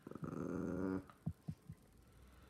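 A puppy growling for about a second, a rough pulsing growl, followed by three short low sounds.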